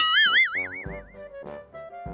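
A comic 'boing' sound effect: a springy tone that jumps in sharply, then wobbles up and down in pitch as it fades over about a second. Upbeat background music with a steady beat plays under it.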